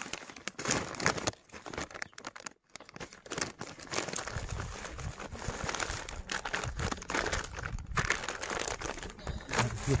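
Thin plastic food packaging crinkling and rustling as hands handle it, in a string of irregular crackles, broken by a short gap about two and a half seconds in.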